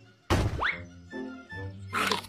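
Cartoon soundtrack: a sudden loud thunk about a third of a second in, with a brief whistling glide just after it, followed by held music notes.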